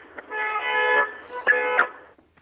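A vehicle horn sounding for about a second, heard down a telephone line from a street, then a click and a shorter toot.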